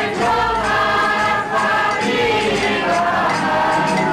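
A mixed group of women and men singing a traditional folk song together in long, held phrases, accompanied by a strummed acoustic guitar.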